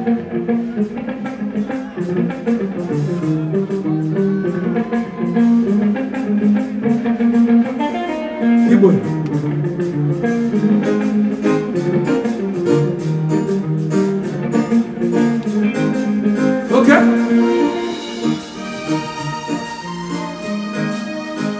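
Live band music: electric guitar playing over drums with a steady beat, with a couple of sliding notes in the middle and near the end.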